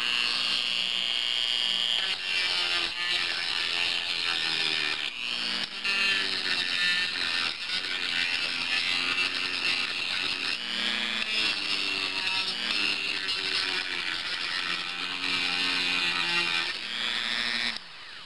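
Dremel Model 285 rotary tool running at its low speed, a half-inch 60-grit sanding band on a drum grinding black paint off a metal panel's hinge. A steady motor whine whose lower pitch wavers as the band bears on the metal; it stops shortly before the end.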